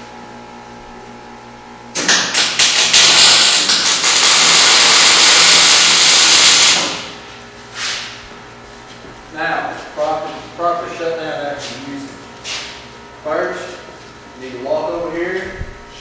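MIG welder arc burning for about five seconds: it strikes with a few sharp pops, runs as a loud steady noise, then stops as the trigger is released.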